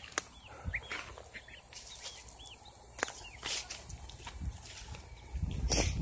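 Young poultry peeping softly, a series of short rising-and-falling chirps over the first few seconds, with two sharp clicks and footsteps on dry ground.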